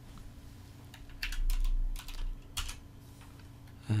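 Computer keyboard keystrokes: a short run of quick key presses, typing a dimension value into a CAD dialog.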